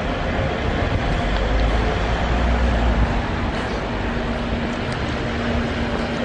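Street traffic noise: a vehicle's low rumble, heaviest in the first three seconds, then a steadier engine hum.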